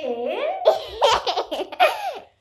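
A young child laughing in several short bursts, with a woman laughing along.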